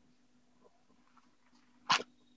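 One short, sharp sound, about a tenth of a second long, near the end, over a faint steady low hum.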